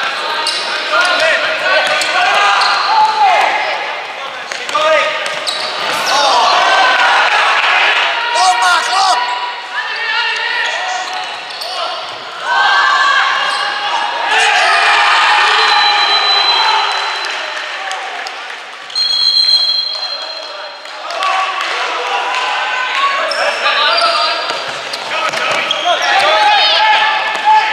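Futsal game play on a wooden indoor court: shoes squeaking on the floor, the ball being kicked and bouncing, and players shouting, echoing in the hall. Two short high steady tones sound around the middle.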